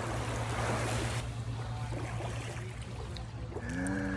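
Steady noise of sea surf and wind on the microphone, heavier for about the first second before dropping off abruptly. A short voiced hum near the end.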